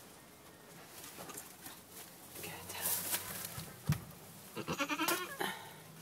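Goat bleating once in a short wavering call about five seconds in, after soft rustling in straw bedding and a single dull thump just before four seconds.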